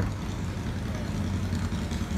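A vehicle engine running at idle, a steady low rumble of street traffic.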